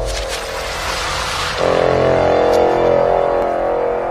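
Electronic dubstep intro: a hissing noise whoosh sweeps in and fades over the first second and a half above a low droning synth. Then a sustained drone chord swells up.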